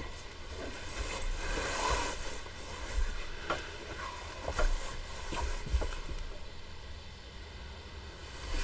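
Bolts of fabric being shifted and laid on a table: soft cloth rustling with a few short, light knocks, over a low steady hum.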